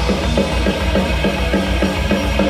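Thrash metal band playing live: electric guitars chugging a fast, evenly repeating riff over bass and a drum kit.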